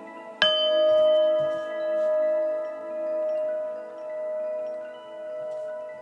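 A singing bowl struck once about half a second in, then ringing on as one long tone whose loudness swells and fades about once a second while it slowly dies away.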